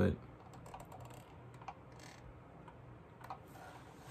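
A few faint, light clicks and taps, scattered and irregular, over a quiet room: small handling noises.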